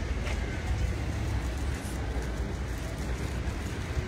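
Steady low rumble of city street traffic.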